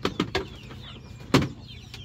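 Chickens clucking, with a few short sharp sounds near the start and one loud knock a little over a second in, over faint high chirping.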